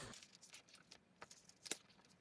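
Sheet of paper being folded and pressed flat on a table: faint rustling and a few soft clicks, the sharpest a little before the end.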